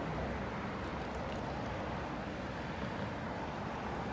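Steady outdoor background noise: an even low rumble with a hiss above it, with no distinct event.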